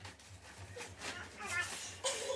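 A short wordless vocal sound from a girl near the end, bending up and down in pitch, after faint rustling and knocks from a fabric bag being handled.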